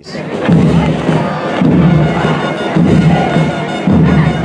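A student band playing a military march for a parade, with a regular low beat, over the noise of a crowd.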